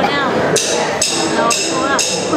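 Drummer counting the band in by clicking drumsticks together, sharp clicks about two a second.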